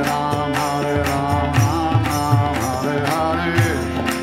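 Kirtan: voices chanting a Hindu mantra over the sustained reedy chords of a harmonium. Tabla strokes keep a steady beat underneath.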